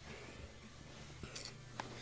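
Quiet room tone with a faint steady low hum, and a short soft rustle about a second and a half in.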